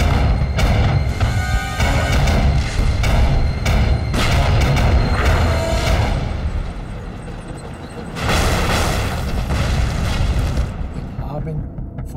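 Battle sound effects of repeated explosions and gunfire over a heavy low rumble, with music underneath. A bigger blast about eight seconds in, then the din fades near the end.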